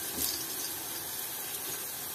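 Hot oil sizzling steadily in a cast-iron frying pan as apple fritters fry, while fresh batter is spooned into the pan.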